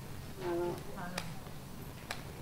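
A pause in speech over a microphone: a short, faint voiced murmur, with a light click about a second in.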